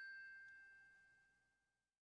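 The last note of a short bell-like chime jingle rings faintly and fades away to silence.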